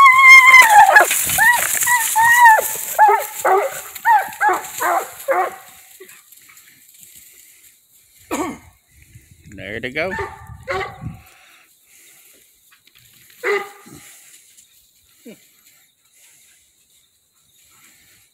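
A coonhound yelping and whining in a rapid run of high calls, loudest at first and trailing off after about five seconds. It is excited at being turned loose from its dog box to hunt.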